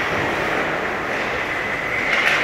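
Steady noise of an indoor ice rink during a hockey game, with skates scraping and gliding on the ice over the hum of the arena.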